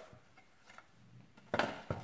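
Picture frames being handled on a table: a light click and faint taps, then, from about a second and a half in, a run of loud clacks as one frame is laid down on another.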